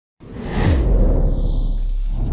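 Whoosh sound effect of an intro logo sting, swelling out of silence a moment in, with a heavy deep rumble underneath.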